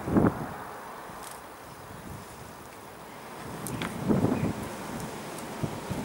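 A rubber window squeegee blade drawn across a wet glass pane, with wind noise on the microphone. Two short, louder sounds come from the blade and pole, one right at the start and one about four seconds in.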